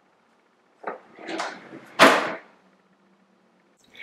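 A kitchen cabinet drawer being shut: a small click about a second in, a brief sliding rustle, then a loud knock at about two seconds as the drawer closes.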